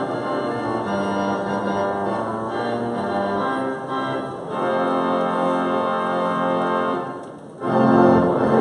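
Pipe organ playing held chords, the opening of the school song, with a brief break between phrases near the end.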